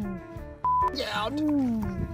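A short electronic beep, one steady high tone, about two-thirds of a second in. It comes between drawn-out 'ooh' calls from a man's voice, over background music.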